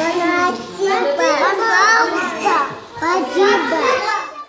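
Young children's voices speaking Russian, swapping short phrases of thanks: "thank you", "you're welcome".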